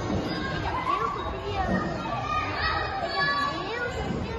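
Many children's voices calling and shouting together as they play in an indoor play hall, a steady din of high, overlapping voices.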